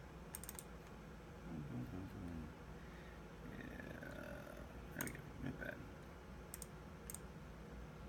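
Computer mouse buttons clicking: a quick pair of clicks at the start, then several more single clicks from about five seconds in, with a faint low mumbling voice between them.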